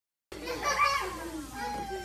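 Several young children's voices chattering and calling out together, starting abruptly about a third of a second in.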